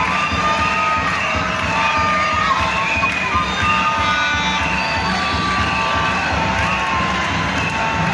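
Large football stadium crowd cheering steadily, a dense wash of many voices with long high tones held over it one after another.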